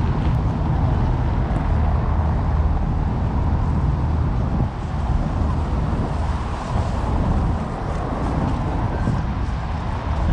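Steady road traffic noise with a heavy low rumble and no distinct events.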